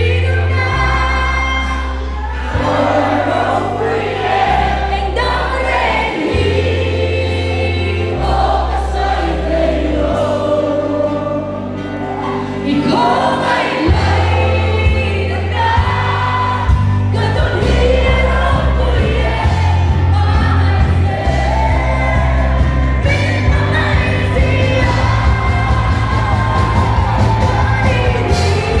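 Live band playing a Christian worship song: a woman sings lead into a microphone over drums, guitars and bass guitar.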